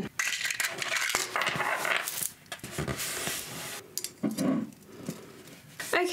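Small beads and thin craft wire being handled at close range: rustling and light clinks as beads are picked up and threaded onto the wire, quieter near the end.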